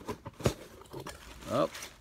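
A cardboard mailer box being opened by hand: one sharp tap about half a second in, then faint handling noise from the cardboard and plastic packaging.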